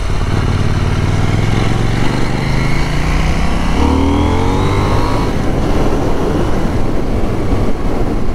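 Motorcycle engine accelerating from low speed, its pitch rising over the first few seconds with a shift in the engine note about four seconds in, under a steady rush of wind.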